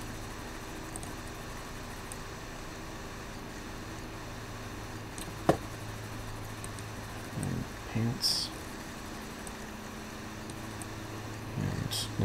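Steady low electrical hum with faint hiss, broken by a single sharp click about halfway through and a couple of short soft low sounds a little later.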